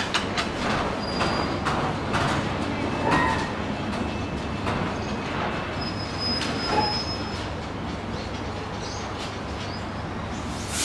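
Stainless-steel passenger carriages of the Indian Pacific train rolling slowly past a platform. The wheels make irregular clicks and knocks over the rail joints, with brief high-pitched squeals about a second in and a longer one around six to seven seconds in.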